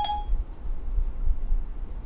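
A short electronic chime from Siri right at the start, acknowledging the spoken request, followed by a steady low room rumble while the answer is awaited.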